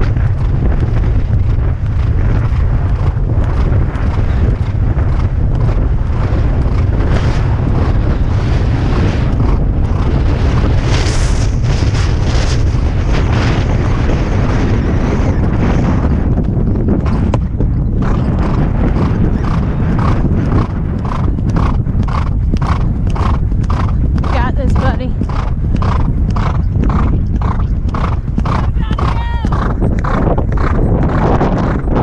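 Thoroughbred horse galloping cross-country, heard from a helmet camera with heavy wind rumbling on the microphone: rushing hoofbeats and wind, a short break about two-thirds of the way through as it clears a fence, then a regular stride rhythm of about two beats a second with the horse's breathing.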